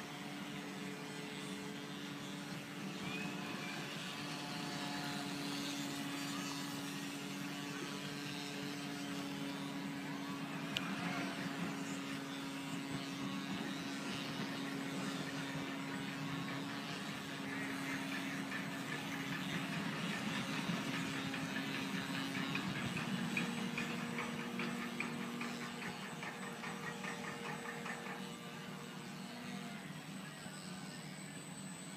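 Brushless electric motor of a radio-controlled speedboat running on the water, a steady whine that drops to a lower pitch about three-quarters of the way through.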